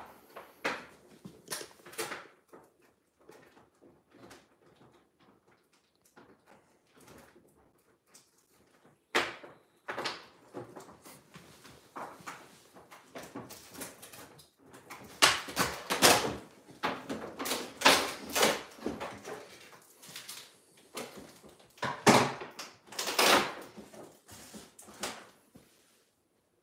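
Irregular handling noise as toy packaging is opened by hand: rustling, crinkling and light knocks in short bursts, louder and busier in the second half.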